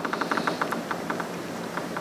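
A brief patter of scattered hand clapping: fast, irregular claps that thin out after about a second.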